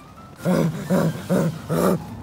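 A person's voice making four short, low vocal sounds about half a second apart, starting about half a second in.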